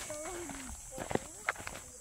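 Footsteps on a dry dirt trail, a handful of sharp steps in the second half, under faint talk and a steady high-pitched insect buzz.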